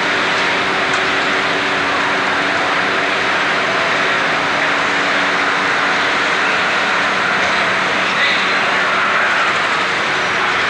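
Steady roar of outdoor street traffic, even in level throughout, with a faint low hum underneath.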